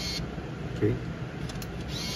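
Seagull SC198 compact film camera's motor whirring briefly as it advances the film after the shutter is pressed, stopping just after the start and whirring again at the very end. A couple of faint clicks come about a second and a half in.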